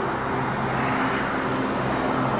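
Steady background rumble and hiss with a low, even hum: outdoor ambience, with no distinct events.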